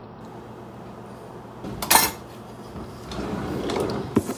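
Kitchen clatter: a sharp knock about halfway through as the hot-sauce bottle is set down, then a rustling noise that builds near the end.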